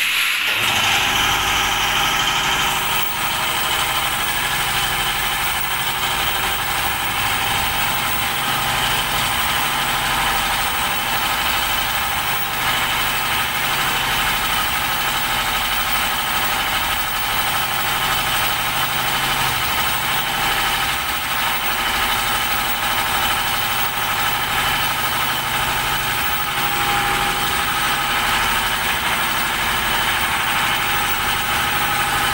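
A motor-driven machine starts up and then runs steadily, a low rumble with a steady high whine over it.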